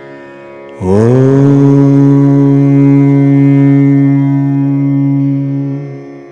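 Devotional mantra chanting: a long held note that slides up at its start about a second in, is held steady for some four seconds, and fades out near the end.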